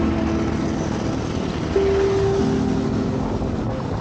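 Steady rush of wind and road noise from a bicycle ride, picked up by a camera carried on the moving bike. Background music with held notes plays over it.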